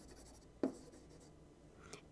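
Faint scratching of a stylus writing on a tablet surface, with one short click about half a second in.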